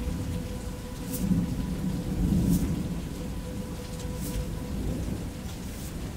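Thunder rumbling low over steady rain, the rumble swelling to its loudest about one to two and a half seconds in, with a few faint sharp clicks spaced about a second and a half apart.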